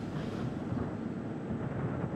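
Falcon 9 first stage's single center Merlin 1D engine firing in its landing burn: a steady, even rushing rumble with no distinct tone.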